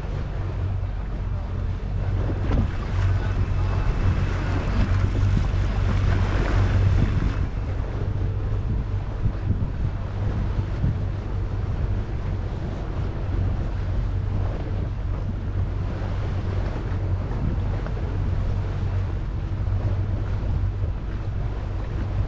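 Motorboat engine running steadily at low speed, with water washing along the hull and wind on the microphone. The wind noise swells between about two and seven seconds in.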